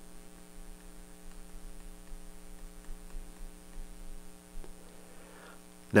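Steady electrical mains hum in the recording, several steady tones sounding together, with one faint click near the end.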